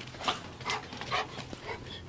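Two dogs playing at close range, a pit bull puppy and an older dog, making a run of short, breathy dog sounds about two a second.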